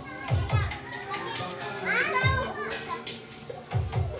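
Children's voices in the background, with one high-pitched call about two seconds in, over faint music with a few deep bass hits.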